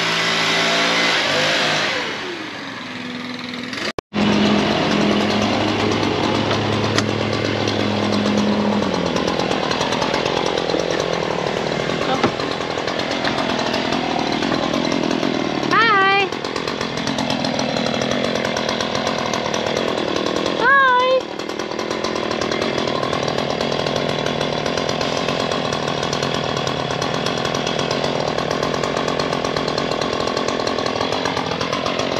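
Gas two-stroke string trimmer running steadily at working speed. Two short pitched calls rise above it about halfway through and again a few seconds later.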